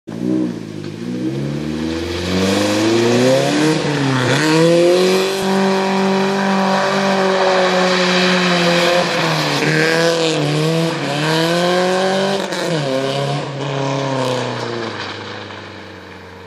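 Audi 80 B3 quattro with a Fox sport exhaust revving hard while drifting in circles on loose dirt. The engine note rises and falls over and over, dipping sharply about four, ten and thirteen seconds in, and tyres scrabble on the gravel. The engine fades near the end as the car pulls away.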